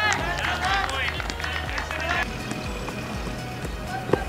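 Cricket fielders' voices calling out across the field for the first two seconds or so, then open-ground ambience.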